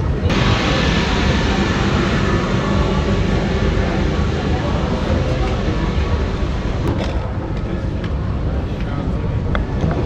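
A steady, loud engine rumble, in keeping with a motorcycle running close by, with people talking in the background. It starts abruptly and eases off after about seven seconds.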